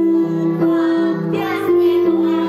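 A children's song: young voices singing over a keyboard accompaniment, in held notes that change about every half second.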